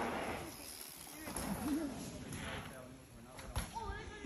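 Mountain bike tyres rolling over a dirt jump track, with a short rush of noise at the start as the rider comes through and weaker rushes later, under faint distant voices.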